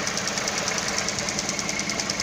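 2003 Hyundai Accent's 1.6-litre four-cylinder twin-cam engine idling steadily at about 800 rpm. It is a mechanically healthy idle pulling normal manifold vacuum.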